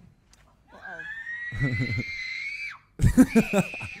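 A long high-pitched scream, rising slightly in pitch, starts about a second in and lasts nearly two seconds. Near the end loud laughter breaks in as a second scream begins.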